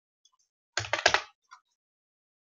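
Computer keyboard keys clicking: a quick cluster of three or four sharp key presses about a second in, then a single faint tick.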